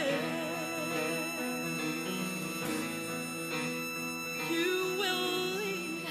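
Closing bars of a ballad: a woman singing long held notes with vibrato over steady instrumental accompaniment, with no words heard.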